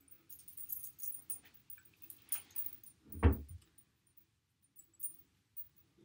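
Hands working through hair while braiding it, with light rustling and small metallic jingles from a chain bracelet moving on the wrist. A single louder low thump comes about three seconds in.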